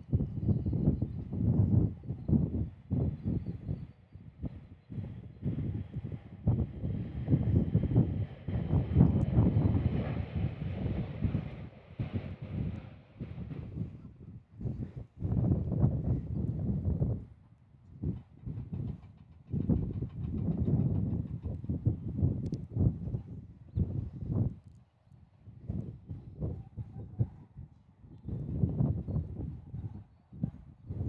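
Strong gusty wind buffeting the microphone in uneven rumbling surges that rise and fall every second or two. Under it, the faint engine whine of a departing Embraer regional jet fades away over the first dozen seconds.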